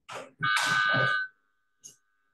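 A short clatter, then a loud clatter with a ringing tone that holds for just under a second, stops sharply and trails off faintly.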